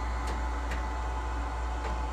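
Steady low hum of room equipment, with a few faint ticks.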